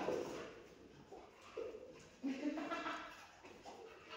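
Faint, indistinct human voice in a room, a few short murmured bits about halfway through.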